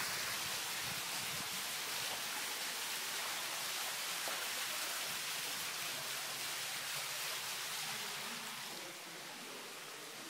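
Fountain jets splashing into a shallow pool, a steady rushing splash, a little quieter near the end.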